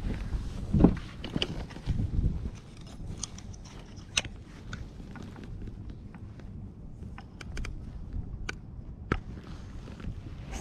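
Handling noise on a kayak: a few dull knocks and rustles in the first couple of seconds as a landed flounder is worked in a landing net, then scattered light clicks as plastic fish grips are handled.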